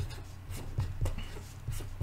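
A pen writing numbers on paper: a series of short strokes.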